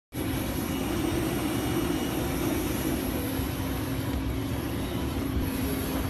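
Steady drone of aircraft running on an airport apron: a constant low hum with a thin high whine over it.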